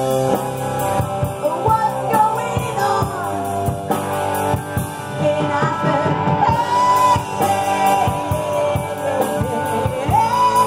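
Live rock band playing: a vocalist singing over electric guitar, bass guitar and a drum kit keeping a steady beat.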